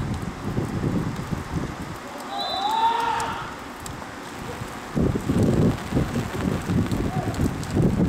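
Wind buffeting the microphone on an open football pitch, with a brief high referee's whistle and a shout about two and a half seconds in. The wind rumble grows louder and more gusty from about five seconds in.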